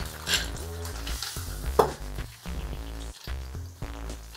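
Spiced rum poured from the bottle over ice in a glass, with a few sharp clicks of ice and glass, over quiet background music.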